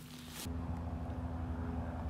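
A steady low motor hum, like an engine running at a constant speed, that sets in about half a second in. Just before it, a short rustle.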